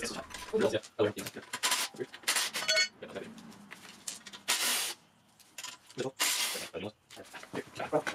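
Metal clinks and knocks from wrenches working the bolts and side plates of a motorcycle swing arm as it is taken off, with one ringing clink and a few short rasping scrapes.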